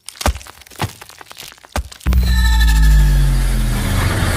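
Trailer soundtrack: a handful of sharp hits over the first two seconds, then loud music with a deep bass comes in about halfway.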